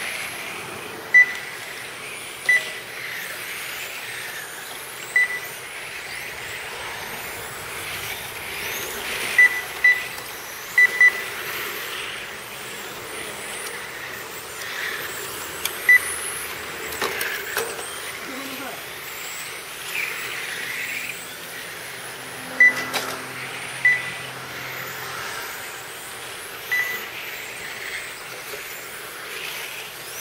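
Radio-controlled 1/10-scale touring cars racing, their electric motors whining up and down in pitch as they accelerate and brake. Short, sharp electronic beeps at one high pitch sound at irregular intervals, the timing system counting a lap each time a car crosses the line.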